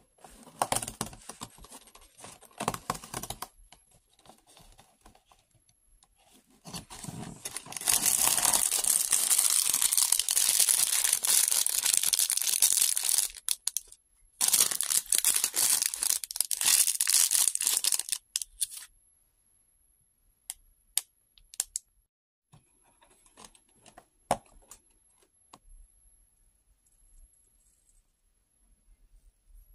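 A thin plastic bag of LEGO pieces crinkling and being torn open, in two long loud stretches in the middle, after a few shorter rustles of the cardboard advent calendar door being opened. Near the end, scattered light clicks of small plastic pieces.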